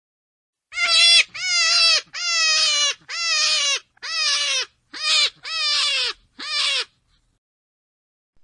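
A rabbit giving eight short, high, squealing cries in quick succession, about one a second. Each cry drops in pitch at its end.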